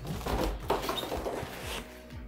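Handling noise from a 3D printer's base being lifted out in its foam packing, with cardboard being pushed aside: a few light scrapes and soft knocks.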